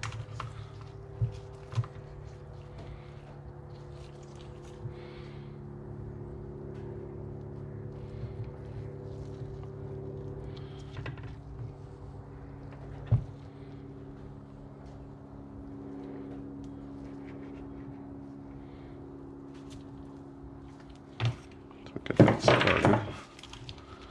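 Small clicks and knocks of gloved hands handling the plastic housing and fuel lines of an Echo CS-360T chainsaw, with one sharper knock about halfway through, over a steady background hum. A loud burst of noise comes near the end.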